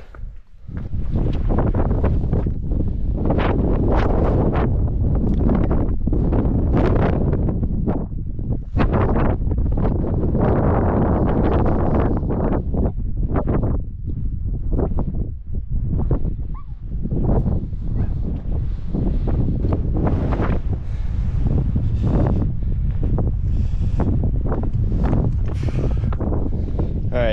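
Wind buffeting the camera microphone: a loud, gusty rush heaviest in the low end, with a few brief dips between gusts.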